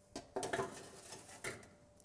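Metal baking trays and an oven shelf clattering as they are handled at an oven, with a few sharp clicks and knocks; the last clear knock comes about one and a half seconds in.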